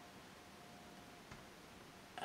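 Near silence: room tone, with one faint click a little over a second in.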